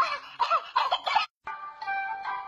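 A series of loud, pitch-bending cries that stop abruptly just over a second in. After a short silent gap, background music begins.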